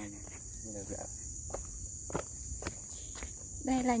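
Footsteps on a grassy dirt path, a few soft separate steps in the second half, over a steady high chirring of insects. A voice is heard faintly about a second in.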